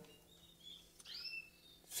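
Caged canaries giving a few faint chirps: two short high calls about half a second in, then a couple of chirps gliding downward about a second in.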